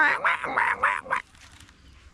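A man imitating a donkey braying with his voice: a run of short, rhythmic, nasal pulses, about five a second, ending a little over a second in.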